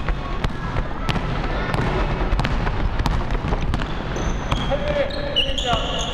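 A basketball bouncing on a hardwood gym floor in a series of sharp thuds about every half-second to second, with short high sneaker squeaks near the end and players' voices in the background.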